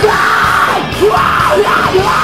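Screamo band playing live: loud distorted guitars and drums under a yelled, screamed vocal line.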